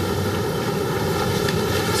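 Steady rushing background noise with a faint hum running through it, with no distinct event.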